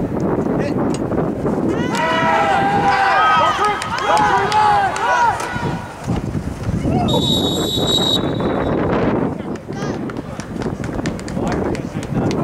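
Voices shouting and yelling over a football play, loudest a couple of seconds in, with scattered knocks. About seven seconds in, a referee's whistle blows one steady note for about a second, stopping the play.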